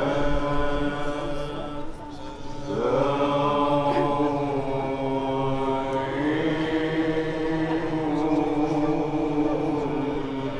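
Male voices chanting a maulid qasida in maqam rast, holding long drawn-out notes. The chant breaks off briefly about two seconds in and comes back with a rising note that settles into a sustained tone.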